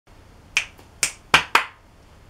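A person snapping their fingers four times in an uneven rhythm, the last two snaps close together.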